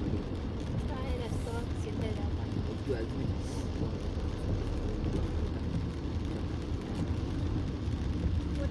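Steady engine and tyre noise inside a Tata Punch's cabin while it drives along a wet road, a low even rumble.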